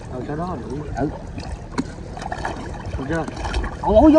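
Muddy river water sloshing and lapping around people wading chest-deep, with brief murmured voices over it and a single sharp knock or splash partway through.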